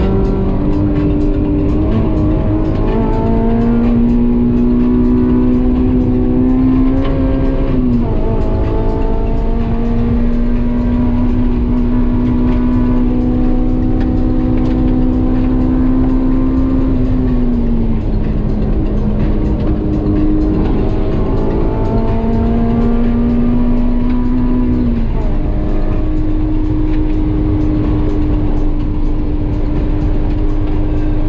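Honda S2000's four-cylinder engine running hard at high revs, heard from inside the cabin over heavy wind and road rumble. Its pitch holds or climbs slowly and changes abruptly about three times with gear changes.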